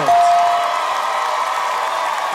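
Studio audience cheering and applauding over a brief music sting, with a single held tone in about the first half-second.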